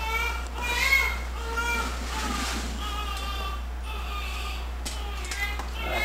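Newborn baby crying in a string of short high-pitched wails, over a steady low hum.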